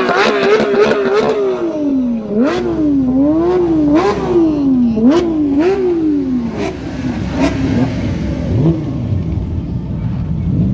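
A sports car engine being revved in repeated blips, its pitch climbing and dropping about once a second, with sharp cracks from the exhaust at the tops of the revs. Near the end the revving stops and the engine settles to a lower, steadier note.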